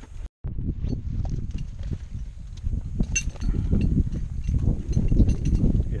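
Wind buffeting a helmet-mounted camera's microphone, a low rumble that rises and falls and is strongest about five seconds in, with a few scattered clicks of metal rope hardware. The sound cuts out for an instant just after the start.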